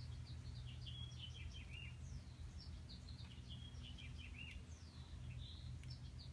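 Birds chirping faintly in the background, a steady scatter of many short, high chirps, over a low steady hum.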